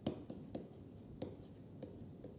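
Pen writing by hand: about five sharp, irregular taps of the pen tip with faint scratching between them as a word is written out.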